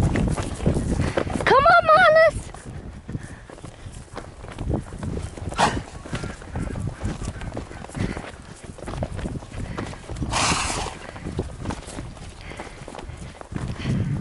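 Horses moving about on grass close by, with a short high call whose pitch rises and then wavers about two seconds in, and a brief breathy rush of noise at about ten seconds.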